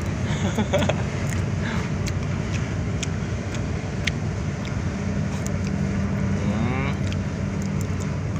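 Large cargo ship's engine running as it passes close by, a steady low drone with a constant hum, mixed with wind on the microphone.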